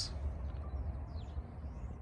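Quiet outdoor background with a steady low rumble and hiss, and a few faint bird calls about a second in.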